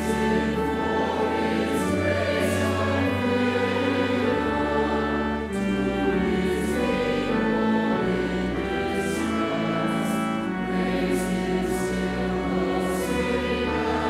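Congregation singing a hymn together with organ accompaniment, the organ holding sustained low notes beneath the voices.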